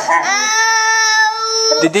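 A toddler crying out in one long wail, held at a steady high pitch for about a second and a half: a cry of hurt or upset.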